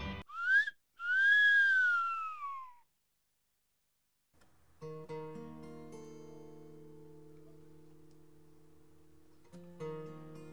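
A whistled tone: a short upward slide, then a longer note that slowly falls in pitch. After a brief silence, an acoustic guitar chord is plucked and left to ring, with another chord struck near the end.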